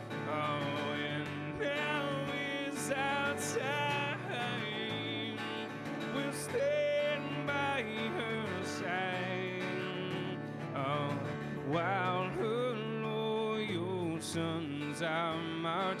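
A man sings, holding wavering notes, to his own strummed steel-string acoustic guitar.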